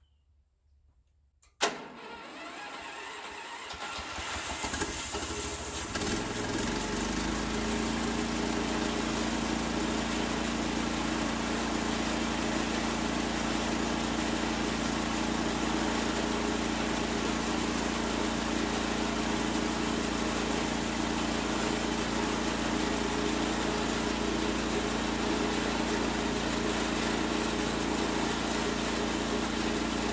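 The engine of a homemade bandsaw sawmill starts suddenly about a second and a half in, builds up over the next few seconds, then runs at a steady speed.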